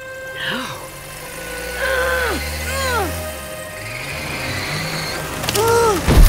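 A cartoon tow truck's engine rumbles low as it strains to pull a heavy truck, and the pull is failing. Short rising-and-falling groans come several times, over background music.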